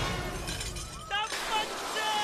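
Crockery and dishes crashing and clattering as a body slides along a laden banquet table, with short vocal cries about a second in.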